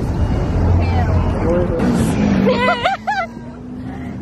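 City bus engine rumbling at the curb, heaviest in the first two seconds, then settling into a steady low hum. Crowd voices chatter over it just before the end.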